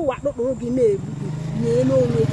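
A woman's voice in short spoken phrases, with a vehicle engine droning underneath that grows louder about a second and a half in.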